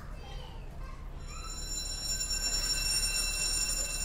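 Ferry alarm sounding a steady high tone that starts about a second in, over the low rumble of the ship. It is a false alarm, set off by a slight electrical fault.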